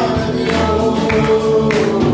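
Punjabi Christian gospel song: voices singing a held melody together over instrumental backing with percussion hits.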